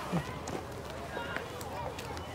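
Background chatter and calls of schoolchildren, several voices overlapping at a distance, with scattered footsteps.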